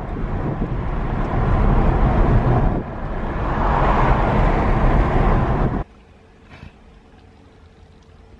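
Loud road and wind rumble inside a moving car's cabin. It cuts off suddenly about three-quarters of the way through, leaving a much quieter cabin with a faint steady hum.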